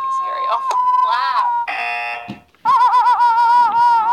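A man's high-pitched, squealing laugh-cry from a laughter-yoga teacher, held on one steady note with a wavering start. It breaks off about two and a half seconds in and then starts again.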